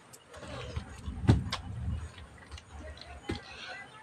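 Eating by hand from a steel plate: a few light clicks and knocks, over low rumbling handling noise from a hand-held phone.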